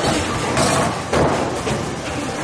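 Bowling alley din of rolling balls and pinsetter and pin noise from the lanes, with a couple of thuds about half a second and a second in.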